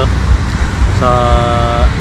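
Wind buffeting the camera microphone, a steady low rumble. About a second in, a held steady tone sounds for just under a second.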